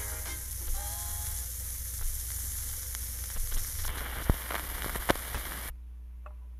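Needle crackle and hiss from a 45 RPM record playing through a 1956 Webcor Studio phonograph's speaker as the song fades out, over a steady low amplifier hum, with a few sharp clicks. The hiss cuts off suddenly near the end, leaving only the hum.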